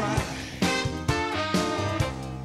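A live band plays a song led by electric keyboard, with a steady beat and accented chords about every half second.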